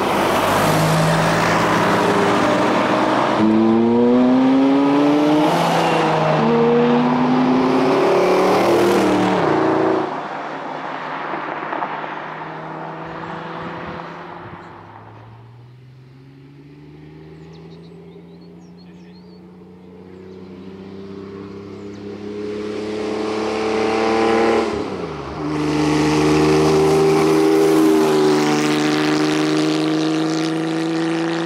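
Sports car engines accelerating hard out of a bend, the pitch climbing through several upshifts, then fading away. From about twenty seconds in another car's engine rises as it comes closer, dips briefly in a gear change near the end and runs on steadily.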